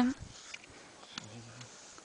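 A spoken word trails off at the start, then quiet open-air background hiss with a light tick and a brief low hum a little past the middle.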